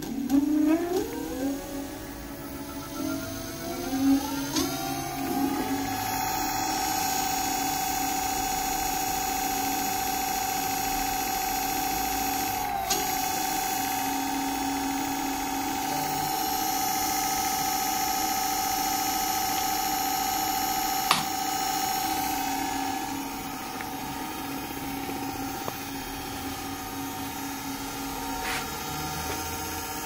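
Electric scooter's hub motor spinning its lifted wheel: a whine that rises in pitch over the first six seconds as the wheel speeds up, then holds steady. It runs smoothly, like new, on freshly replaced wheel bearings.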